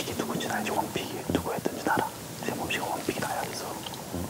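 Two men talking in low, hushed voices.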